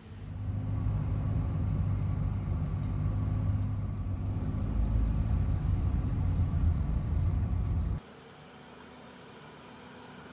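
A car driving, heard from inside the cabin: a steady low engine and road rumble. It cuts off suddenly about eight seconds in, leaving a much quieter steady hiss.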